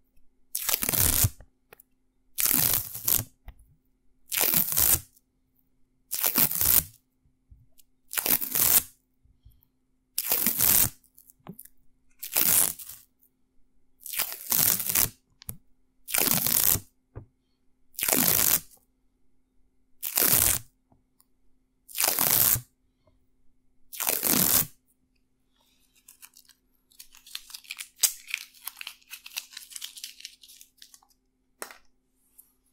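Paper masking tape pulled off the roll in short, loud rips, about a dozen of them at an even pace of one every two seconds. Near the end a fainter, dense crackle follows as the tape is handled close to the microphone.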